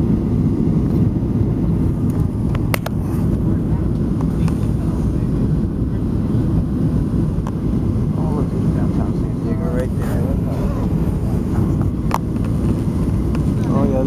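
Steady low cabin roar of a Southwest Airlines Boeing 737's engines and airflow, heard inside the cabin while the jet descends on approach with its flaps extended. There are faint voices about ten seconds in and again near the end, and a couple of small clicks.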